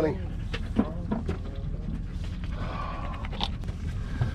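A few faint clicks and knocks as the lid of a plastic stone crab trap is unlatched and swung open, over a steady low rumble.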